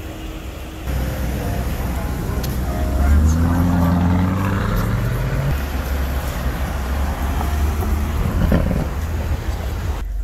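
A Toyota GR Supra's engine accelerating, its pitch rising steadily for about two seconds from roughly three seconds in, over a steady rumble of street traffic.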